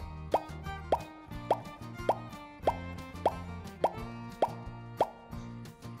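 A string of about ten cartoon 'bloop' pop sound effects, each a quick upward glide in pitch, roughly one every half second, over cheerful children's background music. Each pop goes with one wooden number vanishing from the board.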